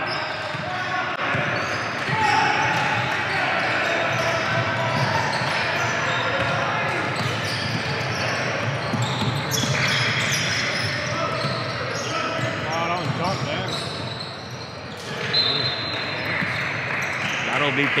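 Youth basketball game sounds in a large gym: a basketball bouncing on the hardwood court under a steady mix of players' and spectators' voices and shouts. A brief high squeak comes near the end.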